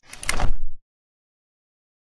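Short swoosh transition sound effect with a low rumble from an animated logo intro, cutting off under a second in.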